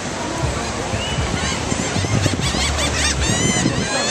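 Gulls calling, a laughing gull among them: scattered high calls, then a quick run of short arching calls in the second half. Surf and wind on the microphone run steadily underneath.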